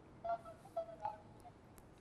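Faint, broken snatches of a man's voice coming over a telephone line, a few short syllables with pauses between them.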